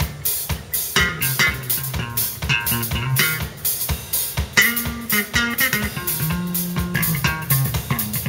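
Live instrumental band jam: an electric guitar plays a melodic line over bass guitar and a steady drum-kit beat.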